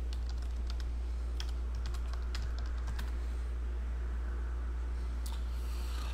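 Typing on a computer keyboard: a run of irregular key clicks through the first three seconds and a couple more near the end, over a steady low electrical hum.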